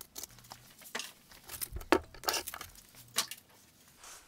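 Sanding discs being gathered by hand and slid out of a wooden drawer: a run of irregular paper rustles and scrapes that stops shortly before the end.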